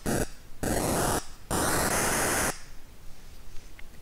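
Patchblocks mini-synthesizer in its noise mode, played as separate notes from a MIDI keyboard. Three bursts of digital noise, each note's pitch set by the key played, the last stopping about two and a half seconds in.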